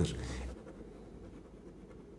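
A pause in a man's studio speech: his last word trails off at the start, then faint room tone.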